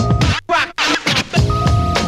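Breakbeat drum loop with a bassline drops out about half a second in for a short burst of turntable-style scratching, then the beat comes back in about a second and a half in.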